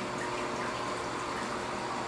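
Steady rush of moving water from a running reef aquarium's circulation, with a faint steady hum underneath.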